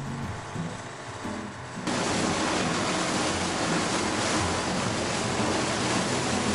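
Steady rush of engine, wind and water aboard a fast boat underway at about 37 km/h, cutting in suddenly about two seconds in.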